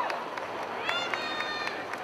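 Footfalls of a large mass of runners on pavement, a dense irregular patter, under crowd voices. A high, held call, a shout or whistle from the crowd, rises out of it about a second in and lasts under a second.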